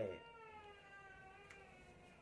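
A cat giving one long, faint meow that slowly falls in pitch.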